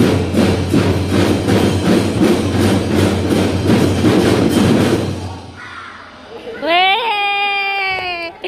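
Children's drum band playing live: drums keep a steady, even beat with a heavy bass, then stop about five seconds in. Near the end a voice shouts one long, held call.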